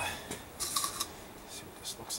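Gloved hands handling the plastic collection tank of a vacuum brake bleeder and a clear plastic bottle: a few short rustles and scrapes.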